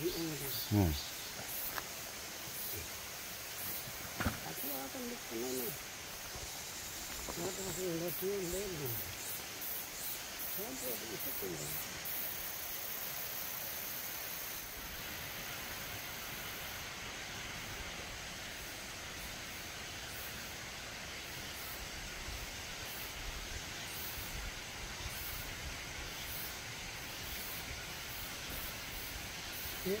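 Steady outdoor background hiss, with three short stretches of quiet, low-voiced talk in the first twelve seconds and light rustling as a backpack and clothing are handled.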